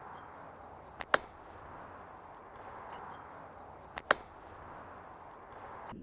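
Two sharp cracks of a golf club striking a ball, about three seconds apart, each led by a fainter click, over a steady outdoor hiss.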